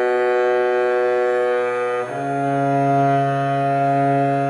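Double bass in solo tuning, bowed slowly: one long sustained note, then a step up to the next note of an A major scale about two seconds in, held steadily.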